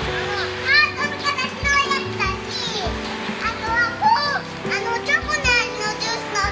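A young child's high voice calling and talking in short bursts, over background music with held notes and a low beat.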